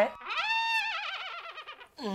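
Short comic sound-effect sting: a high, whistle-like tone that holds for about half a second, then wavers downward and fades.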